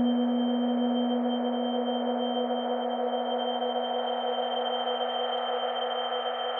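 Ambient electronic music at the close of a song: a sustained drone of several steady held tones, with no beat, slowly getting quieter.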